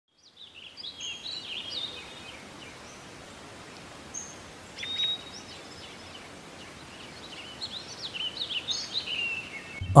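Small birds chirping and tweeting over a steady background hiss. The calls come in clusters near the start, again about five seconds in, and more densely toward the end.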